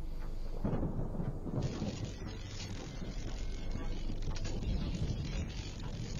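Logo-intro sound effect: a deep, thunder-like rumble, joined about a second and a half in by a rain-like hiss.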